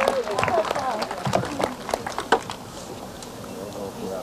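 Crowd reaction: scattered hand claps and cheering, laughing voices, dying down about two and a half seconds in to a quieter background murmur.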